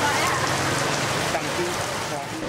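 Steady rain falling, with faint voices of people in the background.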